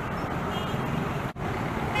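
Steady city road traffic: cars, jeepneys, motorcycles and trucks passing close by as an even low rumble, which cuts out for an instant a little past halfway.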